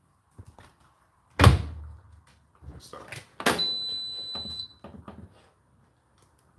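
Washing machine door shut with a loud thunk about a second and a half in. About two seconds later comes a click and then a steady high electronic beep lasting about a second, from the control panel of the Hotpoint NSWR843C washing machine.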